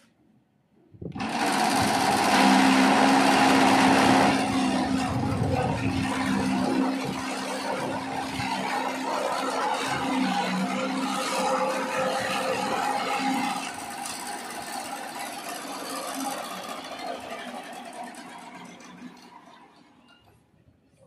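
Chaff cutter (kutti machine) chopping bamboo sticks fed into it as a power test: a steady machine hum under dense crunching and cracking of the cut bamboo. It starts abruptly about a second in, is loudest over the next few seconds and dies away toward the end.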